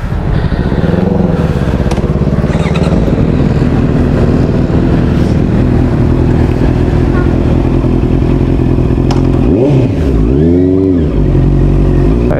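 Honda CB650R's inline-four engine running as the motorcycle rolls off slowly, its note rising and falling once near the end as it accelerates.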